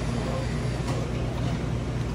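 Steady hum and rush of a commercial kitchen's ventilation and equipment.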